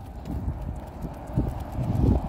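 Footsteps of a person and a leashed dog walking on a concrete sidewalk, with the dog's paws and nails tapping, over a low rumble.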